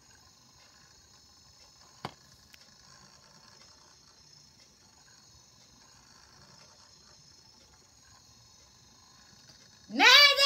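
Very quiet room tone: a faint steady hiss with a thin high whine, broken by a single sharp click about two seconds in.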